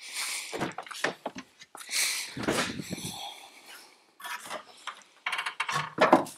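Irregular rustling, scraping and clunks as a car's trunk is released and lifted open, with a low thud about two and a half seconds in.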